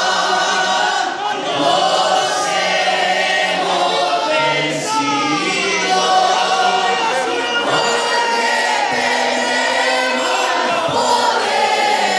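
A group of boys singing loudly together, a church song, with one singer's voice carried through a handheld microphone.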